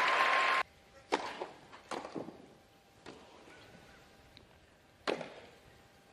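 Crowd applause that cuts off abruptly about half a second in, then a tennis rally in a quiet stadium: sharp racket strikes on the ball and bounces on the grass, five or so separate hits.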